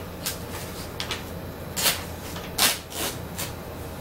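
Sheets of paper being handled on a table: a series of short rustles and flaps, the two loudest a little under a second apart around the middle.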